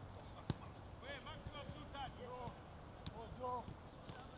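A few sharp thuds of footballs being kicked on a grass pitch, the clearest about half a second in. Faint shouts from players call out in the distance.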